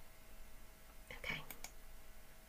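A few faint computer mouse clicks in quick succession about a second in, as a presentation slide is advanced, over a faint steady hum.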